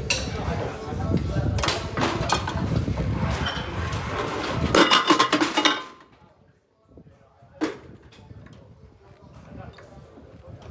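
Gym clatter of metal weights clinking, with voices in the background, that cuts off abruptly about six seconds in. After a brief quiet, a single sharp metallic clank.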